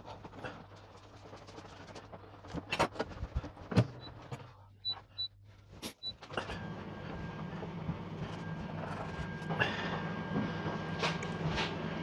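Knife carving a roast beef joint on a plastic chopping board, with clicks and knocks of the knife and fork against the board. Around the middle come a few short high beeps, then a steady appliance hum with a faint whine sets in for the second half.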